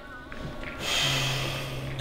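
A young man's long, breathy groan with a low, steady pitch, swelling in about a second in and holding until the end.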